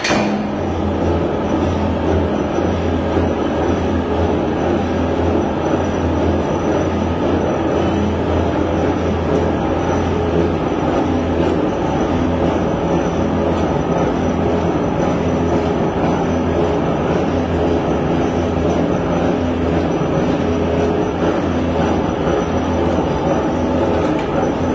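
Large flywheel-type mechanical power press running on its first start-up, with its motor and belt-driven flywheel spinning. It makes a loud, steady mechanical rumble and whir with a fluttering low hum.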